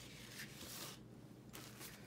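Faint rustling and scraping of paper cards being handled and slid on a tabletop, with a longer rustle in the first second and a shorter one near the end.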